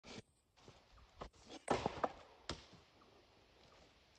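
Footsteps crunching on dry leaves and wood chips, with a few light knocks. The loudest burst comes about halfway through, followed by one sharp knock.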